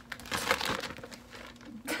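A clear plastic zip-top bag packed with wrapped Twix bars crinkling as it is handled and pulled at by the seal. The crackling comes in irregular bursts, loudest about half a second in. A short laugh comes at the very end.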